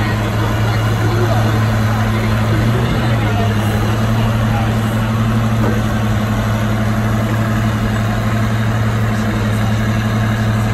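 Oliver 1655 tractor engine running at a steady speed with a constant low hum, no revving, while hooked to the pulling sled.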